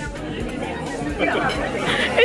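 Indistinct chatter of several people talking at once in a busy restaurant.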